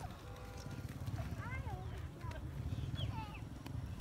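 A few short, high-pitched children's shouts or squeals with rising and falling pitch, over a steady low rumble.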